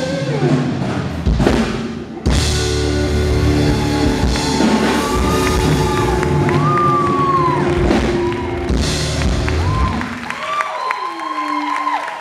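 Live band playing an instrumental outro, drum kit and bass to the fore, with the music thinning out and fading about ten seconds in.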